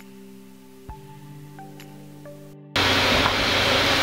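Quiet room tone with faint steady low tones and a few faint clicks. About three-quarters of the way in, the sound cuts out for a moment and is replaced by a much louder steady hiss as the audio input switches from a Shure SM7B to a Rode microphone, which picks up computer fan noise.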